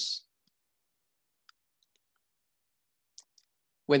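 Near silence in a pause in speech, broken by two faint short clicks, one about one and a half seconds in and another just after three seconds.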